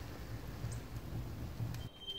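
Faint crackling of a small wood campfire over a low, uneven rumble of outdoor ambience, cutting off abruptly near the end.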